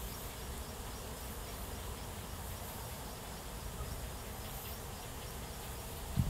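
Steady outdoor background of insects over a low rumble, with no distinct events.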